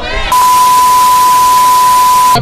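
TV-static transition effect: a loud hiss of white noise with a steady 1 kHz test-tone beep under it. It starts about a third of a second in, just as a voice trails off.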